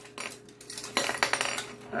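Clicking and clattering of a small plastic drawing-board toy and its tethered stylus being grabbed and handled, with a few light clicks and then a quick run of clatter about a second in.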